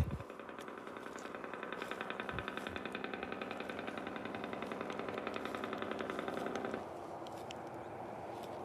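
A distant truck's diesel engine running with a fast, even pulse. It grows slightly louder, then cuts off about seven seconds in.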